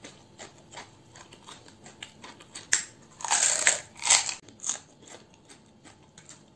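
Close mouth sounds of someone biting into and chewing a water-filled panipuri (puchka): the crisp fried shell crunches loudly a little before halfway, in a short cluster of cracks, with small wet chewing clicks around it.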